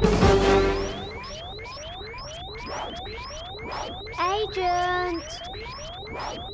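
Cartoon background music that stops about a second in, followed by short rising electronic chirps repeating about three times a second: a signal for an incoming call. A short voiced sound like a character's exclamation stands out midway.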